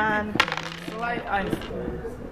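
A pair of dice thrown onto a wooden backgammon board: a sharp clack about half a second in, then a brief rattle as the dice settle.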